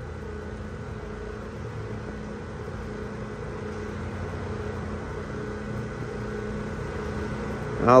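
A steady low machine hum, like a motor running.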